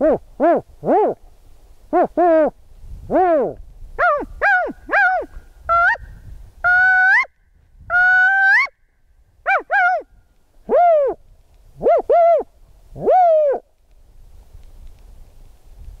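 A man's voice imitating California spotted owl calls, mixed together: groups of short hoots, two longer rising notes in the middle, then more hoots. The calls stop about two seconds before the end.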